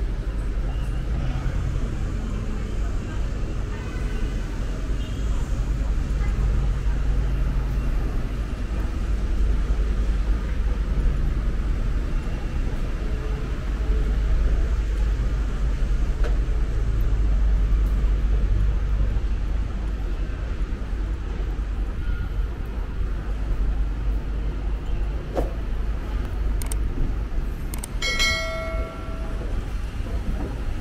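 Steady low rumble of city street traffic with faint voices of passers-by. Near the end, a short bell-like chime rings for about a second.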